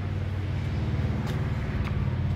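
A steady, low-pitched engine hum with no change in pitch.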